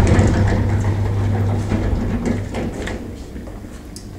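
Lift running with a steady low hum that fades as it arrives, then its sliding doors opening, with a few short clicks about halfway through.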